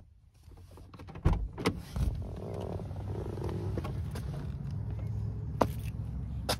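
Clicks and knocks inside a Toyota car, a few of them in the first two seconds and one more near the end, over a low steady rumble that sets in about two seconds in.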